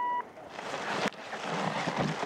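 A short electronic beep, then the hiss and scrape of giant slalom skis carving across hard snow, coming in surges with the turns.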